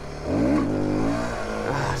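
Motorcycle engine revving hard about a third of a second in, the pitch climbing sharply, holding high, then easing off slightly: a wheelie attempt that fails to lift the front wheel.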